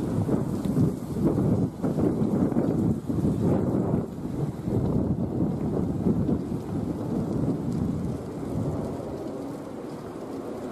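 Wind buffeting the camera's microphone: an irregular low rumble that is loudest through the first eight seconds and dies down near the end.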